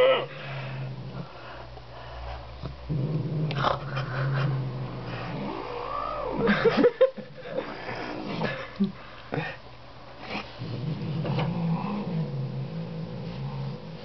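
A domestic cat growling in a long, low, motor-like rumble, broken now and then by short rising-and-falling yowls: a hostile warning growl.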